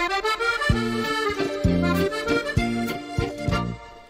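A short music sting for a dish reveal: a held melody over a bouncing run of low bass notes. It starts abruptly and cuts off shortly before the end.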